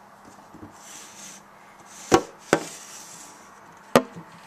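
Three sharp, short knocks or taps, two close together about two seconds in and a third near the end.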